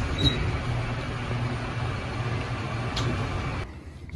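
Steady rushing noise and low hum of a high-speed Westinghouse traction elevator car travelling up its hoistway, heard from inside the cab. A click about three seconds in; the noise drops away sharply shortly before the end.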